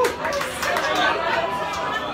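Audience chatter between songs: many people talking over one another, with no music playing.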